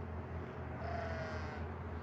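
An animal's single drawn-out call lasting under a second and falling slightly in pitch, heard about halfway through over a steady low hum.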